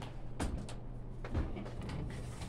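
Sliding glass door of a knife display case being opened, with two dull knocks about half a second and a second and a half in, over a steady low hum.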